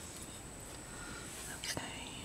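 Faint whispered voice, with a short hissy sound near the end.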